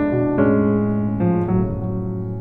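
Keyboard with a piano sound playing a short gospel-style chord movement in sixths: four chords struck one after another, each left ringing into the next.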